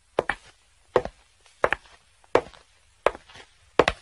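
Footsteps at an even walking pace, one step about every 0.7 s, each step a short sharp double tap, six steps in all.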